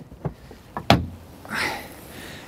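The front trunk lid latch of a Porsche Cayman S being flicked open: faint clicks, then one sharp click just before a second in as the latch releases. A brief soft rush of noise follows as the lid is lifted.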